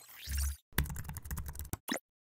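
Computer keyboard typing sound effect: a quick run of keystroke clicks, with a final click near the end. It is preceded by a short swoosh with a low thud in the first half-second.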